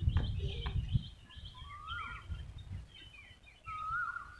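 Small birds chirping: scattered short calls and a few rising-and-falling whistles. A low rumble, like wind on the microphone, runs through the first second.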